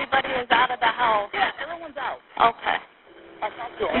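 Voices talking on a recorded emergency phone call, heard through a narrow-sounding telephone line, with a short pause about three seconds in.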